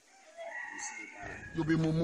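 A rooster crowing in the background, one drawn-out call lasting about a second, followed near the end by a short burst of a man's voice.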